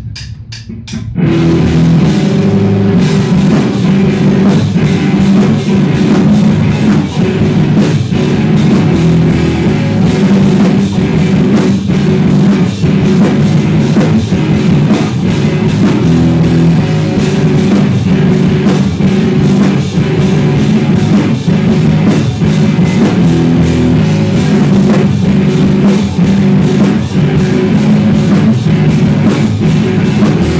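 A rock band playing loud, with electric guitars over a drum kit and no vocals, coming in together after four quick clicks at the very start.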